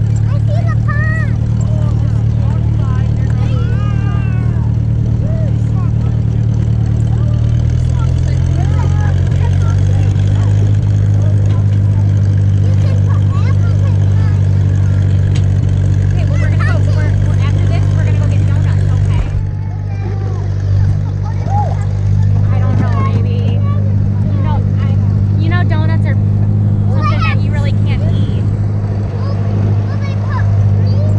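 Small farm tractor's engine running steadily as it tows a hay wagon, its note shifting about eight to ten seconds in.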